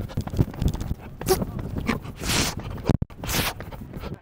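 Clothing rustle and breathing picked up by a body-worn microphone on a running hurdler, with stronger bursts about once a second.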